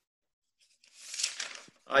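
Paper rustling for about a second, notepad pages being handled, after a moment of silence.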